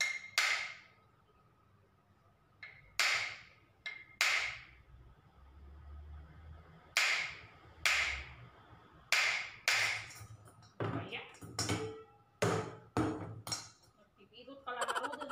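Hammer striking the neck of a glass wine bottle again and again: sharp clinks with a short ring, mostly in pairs, coming faster near the end. The glass has not yet cracked.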